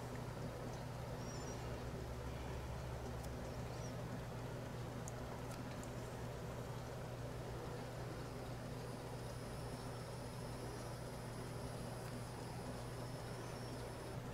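Quiet room tone: a steady low hum with a few faint ticks, and no distinct sound from the work at hand.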